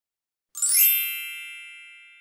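A bright chime sound effect: a quick upward shimmer about half a second in, then several high ringing tones that fade away slowly.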